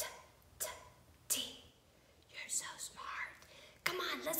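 A woman whispering in a few short, breathy bursts.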